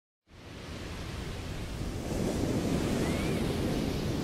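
Ocean surf and wind ambience, a steady rushing noise that fades in right at the start and slowly grows louder.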